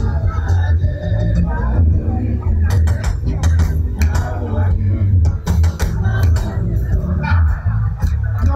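Live band playing an upbeat groove through a PA: a heavy pulsing bass line and frequent drum hits, with a voice coming through the microphones at times.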